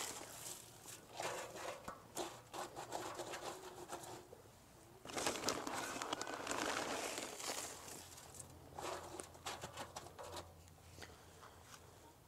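Faint rustling, crinkling and light pattering in three stretches of a few seconds each, from a bag of clay oil-dry absorbent being handled and its granules sprinkled over wet ash.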